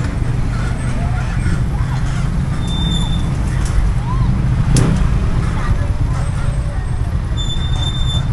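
Steady roadside traffic: cars, a box truck and motorbikes passing close by with a continuous low rumble, and a single sharp click about five seconds in.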